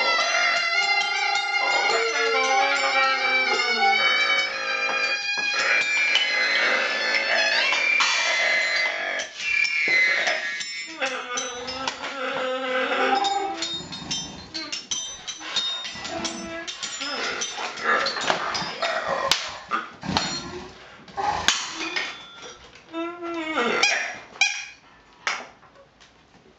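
Live experimental music: a small hand-held wind instrument played at the mouth gives loud, stacked, shifting pitched tones for the first several seconds. It then breaks into shorter squeaks and bent, call-like sounds that thin out and fade as the piece winds down.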